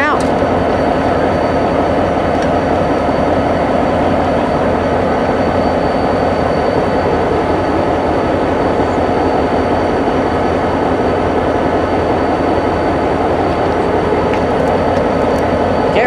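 Diesel locomotive (GEXR 581) idling close by, loud and steady.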